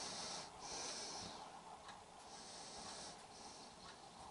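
Faint breathing: three soft, hissy breaths, each under a second long, over low background hiss.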